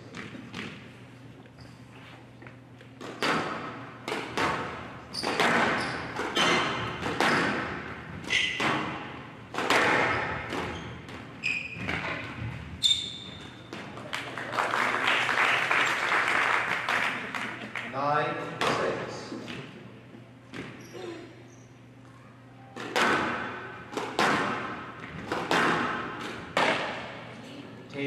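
Squash rally on a glass court: repeated sharp hits of the ball off rackets and the walls, echoing in a large hall, with a few seconds of applause about halfway through.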